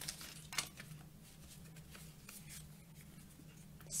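A small deck of paper oracle cards being shuffled and handled: soft rustling and brief swishes of card against card, with one sharper flick about half a second in.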